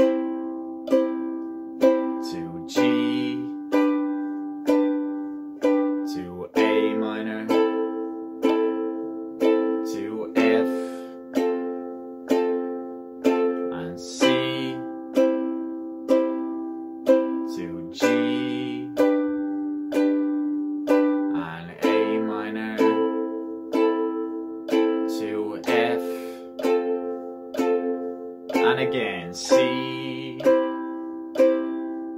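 Ukulele strummed in a steady slow rhythm, running through the chords C, G, A minor and F and changing chord every few seconds.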